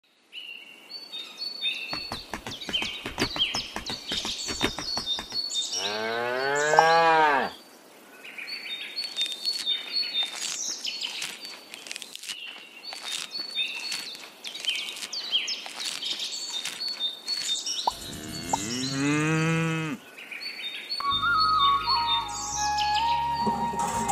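A cow mooing twice, one long call about six seconds in and another about twelve seconds later, over birds chirping. A patter of clicks comes before the first moo, and music comes in near the end.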